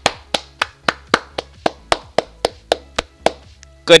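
One person clapping hands at a steady, even pace, about four claps a second, stopping shortly before the end.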